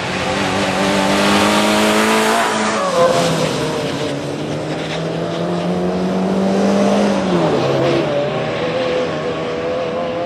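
Fiat Seicento rally car's small four-cylinder engine held at high revs as the car passes. The pitch falls sharply about three seconds in, with a short loud burst, then climbs steadily and falls again a little past the middle.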